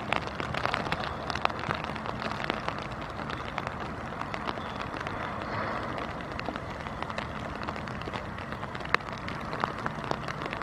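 Rain falling, a steady hiss with many sharp, irregular clicks of single drops striking close to the microphone.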